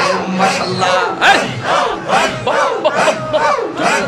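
Zikr chant: many men's voices shouting a repeated phrase in unison, in a fast steady rhythm of about three beats a second, amplified through microphones.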